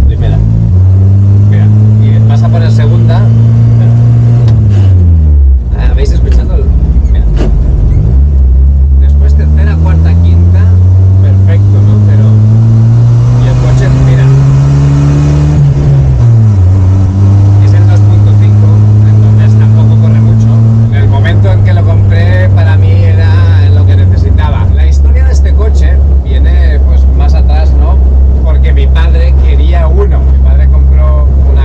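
1991 Jeep Wrangler's engine heard from inside the cabin as it pulls away and works up through the gears with the manual gearbox, the revs climbing and then dropping at each shift, then running at a steady lower pitch near the end. The owner says the gearbox is in very bad shape.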